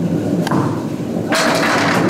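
A candlepin bowling ball rolling down a wooden lane with a low rumble, then striking the candlepins about a second and a quarter in, a sharp wooden clatter of pins being knocked down.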